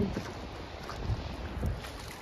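Wind rumbling on the microphone over a steady hiss of shallow running water, with a couple of soft faint thuds.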